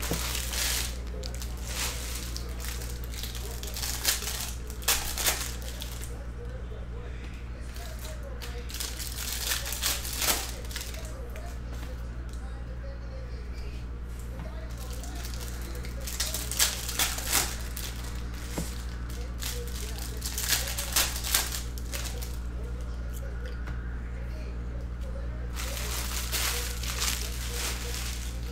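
Trading cards being handled and sorted into stacks: clusters of light clicks, taps and shuffles every few seconds, with some crinkling of foil pack wrappers, over a steady low electrical hum.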